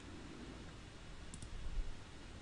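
Faint steady microphone hiss with two quick, faint clicks of a computer mouse button about one and a half seconds in, as a dialog's OK button is clicked.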